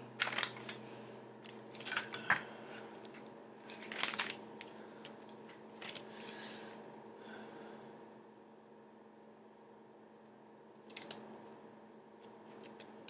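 Faint handling noises: a few short knocks and clicks in the first four seconds and a brief rustle at about six seconds, then little but a faint steady hum.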